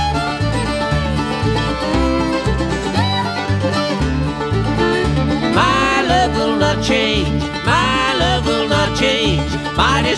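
Bluegrass band playing an instrumental break between sung lines: banjo, fiddle and guitar over a steady bass beat, with sliding notes coming in about halfway through.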